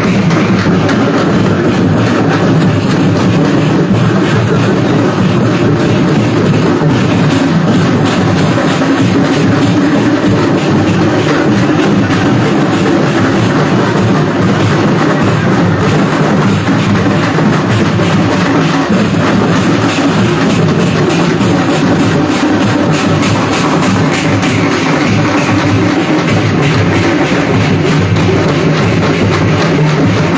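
Loud, continuous procession music driven by drums and heavy percussion, running without a break.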